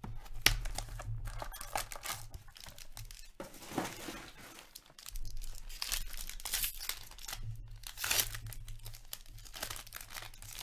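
The shiny foil wrapper of an Upper Deck Stature hockey card pack being torn open and crinkled, in irregular rustling and tearing strokes. There is a sharp crack about half a second in.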